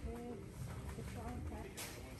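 Indistinct voices in a shop, too low to make out words, with a brief rustle near the end.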